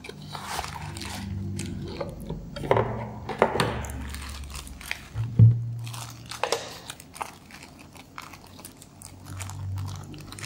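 Plastic packaging and a cardboard box being handled: a box slid open, then a clear plastic bag crinkling and rustling in the hands, with scattered light clicks and taps.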